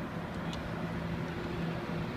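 Outdoor background noise with a steady low hum and a faint click about half a second in.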